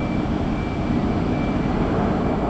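Jets of an aerobatic formation flying overhead, a steady low jet-engine noise with a faint high whine above it.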